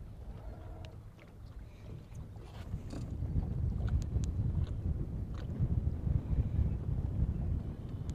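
Low, fluctuating rumble of wind on the microphone and water against a small boat on choppy open water, growing louder a few seconds in, with a few faint ticks.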